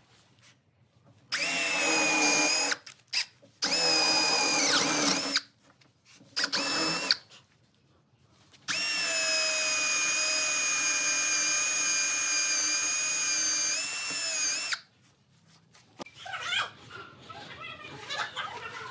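Electric drill boring holes into a clamped pine board: four runs of steady motor whine, the last and longest about six seconds, with the pitch sagging briefly under load near the end of the second run.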